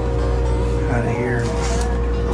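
Background dobro (resonator guitar) music with sliding notes, over a steady electrical or machine hum.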